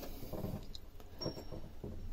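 Quiet small-room tone with a steady low hum and a few faint, short sounds.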